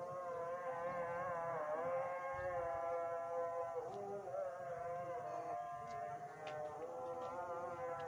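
A slow melody of long held notes with small bends in pitch, sung or played.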